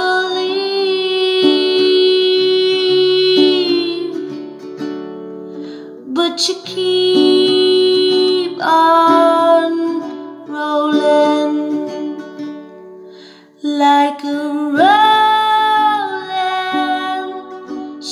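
A woman singing to her own acoustic guitar accompaniment, holding long drawn-out notes, with a quieter lull a little past the middle.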